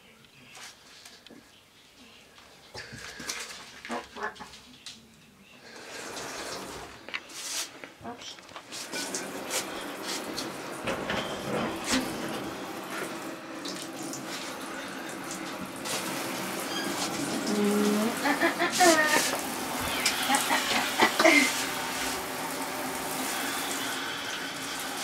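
A few clicks and knocks, then from about nine seconds in a handheld shower head runs steadily, water rushing onto the shower tray.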